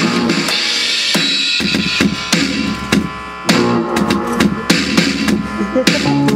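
An Alesis electronic drum kit and a guitar playing together in a loose jam, the drums striking over held low guitar notes. The playing drops back briefly just past the middle, then both come back in.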